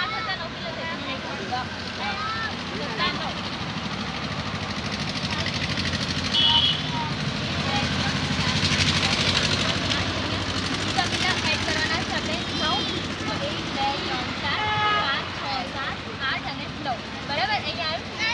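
Road traffic: a motor vehicle passes, its engine noise swelling to loudest about halfway through and then easing off, under indistinct nearby voices.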